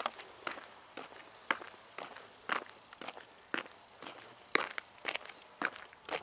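Footsteps of someone walking at an even pace: a sharper step about once a second, with lighter steps between.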